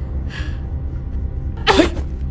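A woman breathing hard in pain, short breathy gasps about once a second, over a low steady background drone. Near the end a voice calls out a loud "Hey".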